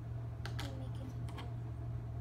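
A few light clicks and taps of cardboard jigsaw puzzle pieces being set down and pressed into place, over a steady low hum.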